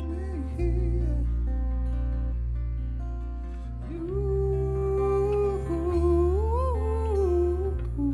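Instrumental passage of a live band: acoustic guitar and bass hold the chords while a Telecaster-style electric guitar plays a lead line with bent notes that slide up and down in pitch. The bass changes note about every two seconds.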